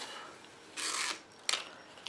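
Thin protective plastic film being peeled off a small clear quilting ruler: a brief crinkling rustle about a second in, followed by a single short click.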